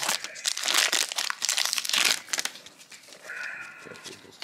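Foil wrapper of a 1992 Donruss baseball card pack being torn open and crinkled by gloved hands. The dense crackling lasts about two and a half seconds, then turns quieter and sparser as the cards come out.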